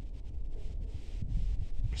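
Low wind rumble on a phone microphone outdoors, with faint rustling and a few soft clicks.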